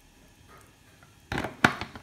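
Kitchen handling noises: a short scrape or rustle and then a few sharp clicks, starting about a second and a half in, as things are handled while oil is added to chopped potatoes.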